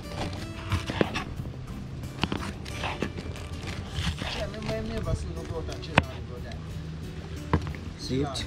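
A kitchen knife chopping sweet pepper and carrots on a wooden cutting board: irregular sharp knocks of the blade on the board, the loudest about six seconds in. Music with a voice plays underneath.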